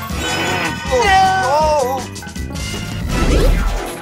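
Cartoon soundtrack: music under a high, wavering cartoon cry about a second in, followed by a low rumbling boom near the end.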